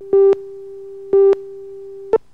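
Video-tape countdown leader beeps: a steady tone with a loud beep of the same pitch about once a second, twice, each beep cutting in and out sharply.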